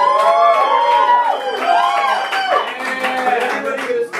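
Small audience cheering and clapping, several voices whooping over scattered hand claps.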